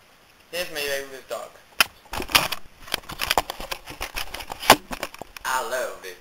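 A short stretch of voice, then about three seconds of irregular sharp knocks and clattering taps, the loudest near the end, before voice returns.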